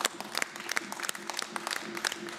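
Applause from a small group of people clapping their hands, dense and irregular, over a faint steady tone.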